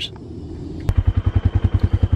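An engine idling with an even, quick low pulse of about ten beats a second. It cuts in abruptly with a click about a second in, after a stretch of low background.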